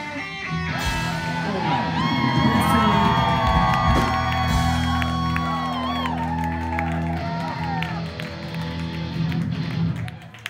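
Live rock band letting a closing chord ring out: a sustained bass note under electric guitars, with a lead guitar bending and sliding notes over it. The music thins and fades near the end, and there are whoops and cheers from the crowd.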